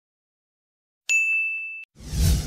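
A single high, bright ding that starts suddenly about a second in, rings on one steady pitch for under a second and then cuts off.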